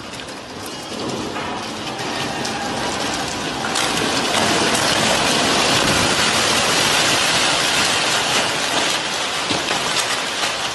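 Heavy storm rain and wind hissing, full of small clicks and rattles. It grows louder about four seconds in, as a brick facade wall tears from a building and clatters down as debris.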